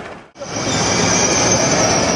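CRH 'Hexie' high-speed electric train at a station platform: a steady high-pitched whine over a rushing noise, starting about half a second in after a brief dropout.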